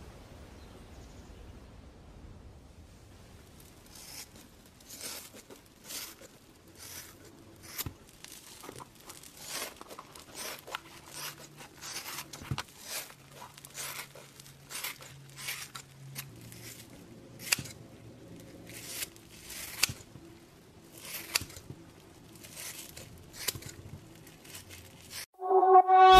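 Faint, irregular crinkling clicks and crackles from latex-gloved fingers pressing and rubbing on skin while blackheads are squeezed out, over a faint low hum.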